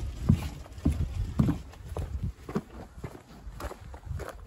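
Footsteps at a steady walking pace, about two a second, the last ones on gravel.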